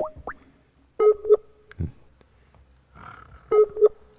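Electronic call-signal tones from a calling app as a dropped call is redialled: a few quick rising blips, then two short bursts of beeping tone about two and a half seconds apart, with the call failing to connect.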